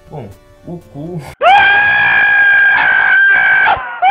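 A meme sound effect: one long, very loud, high, steady-pitched scream, cut in over a clip of a donkey's face, starting about one and a half seconds in and lasting over two seconds.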